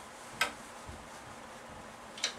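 One short sharp tap against a whiteboard about half a second in, over faint steady room hiss.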